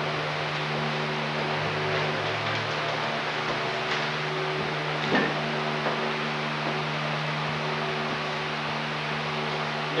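Steady hiss with a low, even hum underneath: the room tone and noise of an old video recording. A few faint, short soft sounds stand out, around two, four and five seconds in.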